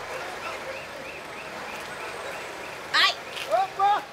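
Steady outdoor traffic noise with a faint repeating chirp. About three seconds in comes a quick rising whistle-like sound, then short high vocal cries near the end.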